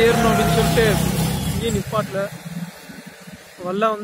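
A vehicle engine running steadily under a man's talking, the hum stopping about two seconds in.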